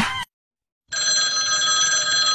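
Background music cuts off, and after a brief silence a steady electronic bell-ringing sound effect starts about a second in: the notification-bell sound of a subscribe-button animation.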